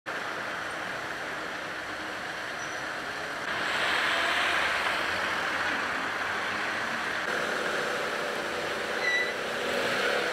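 Steady road traffic noise, stepping up in level about three and a half seconds in, with a short high squeak just before the end.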